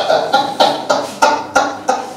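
A man laughing heartily into a headset microphone: a run of about seven short bursts of laughter, roughly three a second, getting quieter toward the end.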